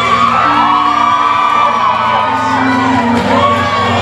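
Audience whooping and cheering over loud recorded dance music. One long held whoop runs through the first half, and a shorter one comes about three seconds in.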